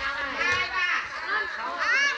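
Several high-pitched voices calling out and chattering over one another, with a high rising shout near the end.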